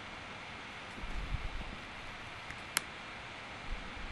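Steady low hiss of room tone and microphone noise, with one sharp click a little after the middle and a few faint low thumps.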